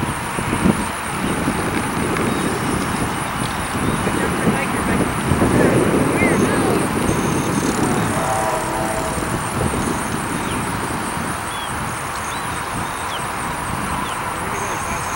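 McDonnell Douglas MD-80's two rear-mounted Pratt & Whitney JT8D turbofans running at low thrust as the jet taxis, a steady jet rumble that swells in the middle as the engine exhausts swing toward the listener, then eases.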